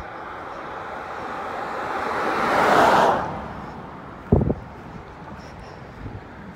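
A car passing close by on the road: its tyre and road noise builds for about three seconds, then falls away quickly as it goes past. A brief low thump follows about a second later.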